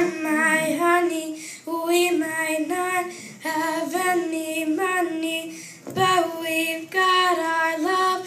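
A young boy singing a pop song into a microphone, in short phrases with brief breaths between them.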